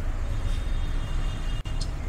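Steady low background rumble with no speech, broken by a brief dropout about a second and a half in.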